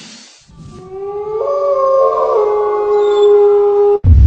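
Intro soundtrack: after a brief hush, a few held, howl-like tones swell in, shift in pitch twice and cut off abruptly.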